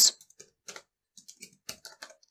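Typing on a computer keyboard: a quick, uneven run of about nine separate keystrokes.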